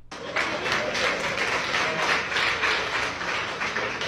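Audience applauding, starting about a third of a second in and thinning out near the end, in a response to a joke from the preacher.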